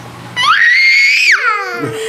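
A young child's high-pitched happy squeal, rising, held for about a second, then falling away to a lower note near the end.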